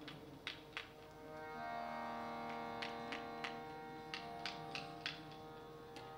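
Harmonium swelling in about a second and a half in and holding a steady chord with no singing, while light hand-drum strokes tap in here and there.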